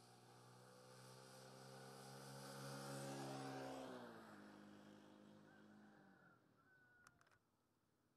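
A motor vehicle passing by: its engine hum grows louder to a peak about three seconds in, drops in pitch as it goes past, and fades away.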